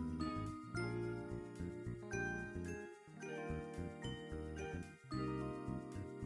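Light background music for the closing card: bright, bell-like melody notes over a steady bass line.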